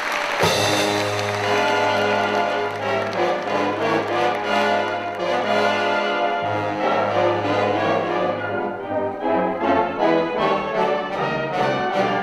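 Live wind orchestra with brass starts playing about half a second in: long held low notes under a moving melody.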